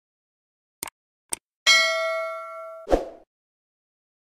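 Notification-bell sound effect for a subscribe animation: two quick mouse clicks about a second in, then a bright bell ding with several ringing overtones that fades over about a second. The ding is cut off by a short low thud near the three-second mark.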